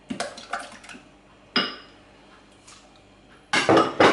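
Glass bowls and kitchen dishes knocking and clinking on a tiled counter: a few light knocks, one sharp ringing clink about a second and a half in, and a louder clattering scrape near the end.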